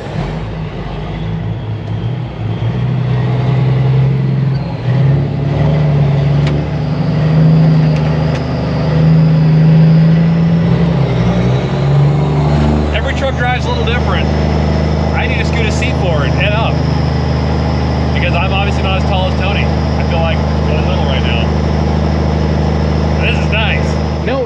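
Semi truck's diesel engine heard from inside its cab, its pitch rising and falling for the first dozen seconds, then running at a steady speed.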